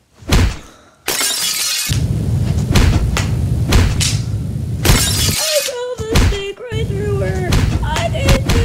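A loud crash with shattering glass about a second in, then continuous loud noise and yelling. In the last few seconds a voice holds a wavering, wobbling note.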